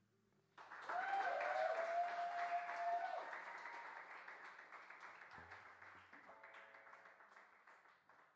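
Audience applauding, starting suddenly about half a second in, with one voice cheering over the clapping for the first couple of seconds; the applause then fades out gradually.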